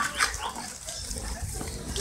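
Short, faint sounds from a freshly slaughtered hog lying on the ground, with a brief sharper sound near the start.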